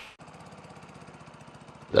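Small engine running steadily at a fast, even beat, faint, with no change in speed.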